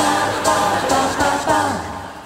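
A small mixed chorus of men and women singing a cappella into handheld microphones, several voices together; the phrase ends with a falling note near the end.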